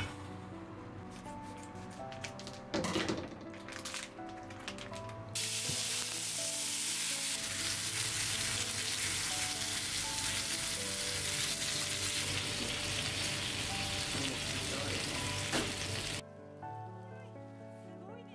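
White fish fillets, broccoli and tomato sizzling loudly in a hot frying pan. The sizzle starts suddenly about five seconds in, after a few clattering knocks, holds steady, then cuts off abruptly about two seconds before the end.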